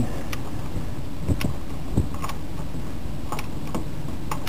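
A torque wrench being worked on the fitting of a dual oil filter mount: about six irregular metallic clicks and ticks from the ratchet and tool, over a steady low hum.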